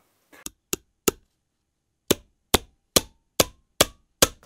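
A series of sharp knocks with dead silence between them. Three come unevenly in the first second or so. After a gap of about a second, a steady run of about two and a half knocks a second starts.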